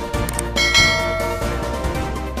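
Background music with a bright bell-like chime, the kind of sound effect used for a subscribe click, struck once just under a second in and ringing away over about a second.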